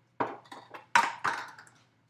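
Metal kitchenware clattering: a series of sharp knocks, each with a short ring, the loudest about a second in.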